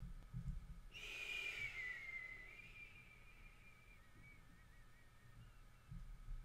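A person softly whistling: a faint single high note about a second in that slides slowly down in pitch and fades out over about three seconds, with a breathy hiss under it.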